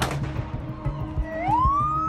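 A siren wail starts a little over a second in, rising in pitch and then holding steady, over background music with a steady low bass. A sharp hit sounds right at the start.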